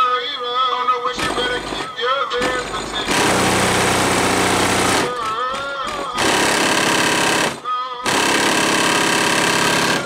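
Hip-hop played very loud through DB Drive WDX G5 subwoofers in a car trunk. Vocals come first. About three seconds in, heavy bass blasts start, recurring near six and eight seconds, each cutting in and out sharply and overloading into a harsh buzz, with rapped vocals between them.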